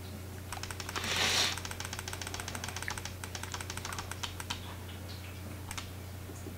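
A quick, evenly spaced run of small plastic clicks from a computer keyboard or mouse for about four seconds as photos are flicked through, with a short breathy hiss about a second in. A steady low hum runs underneath.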